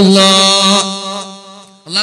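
A man's voice holding one long, steady chanted note, loud at first and then fading away about a second in.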